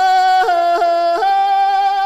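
A solo singing voice holding a high note, broken by three quick catches in pitch in the first second or so, then held steady.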